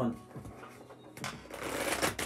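A deck of oracle cards being riffle-shuffled by hand on a tabletop: a rapid fluttering rattle of cards that builds up a little over a second in.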